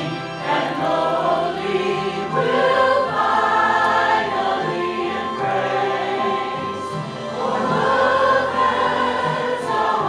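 Church choir of men's and women's voices singing a Christmas cantata together, with sustained, changing chords.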